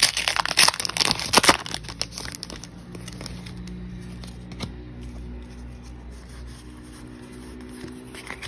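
Foil Pokémon booster pack wrapper crinkling and being torn open in dense crackly rustles for the first two and a half seconds. After that it goes quieter, with a faint steady hum and a single click near the middle.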